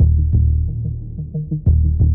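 Dark electronic background score: a heavy, throbbing low bass drone under a fast, ticking run of short repeated notes, with deep hits at the start and again shortly before the end.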